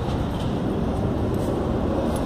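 Steady low rumble of a large vehicle's engine idling, with outdoor street noise.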